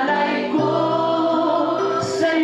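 A worship song: a man singing into a microphone over electronic keyboard accompaniment, with other voices joining in on long held notes.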